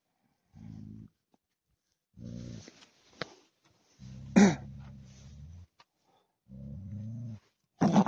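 Tibetan mastiff growling deep and low, lion-like, in about four rumbling bursts while it goes after another animal on the ground. A short sharp cry cuts in about four seconds in.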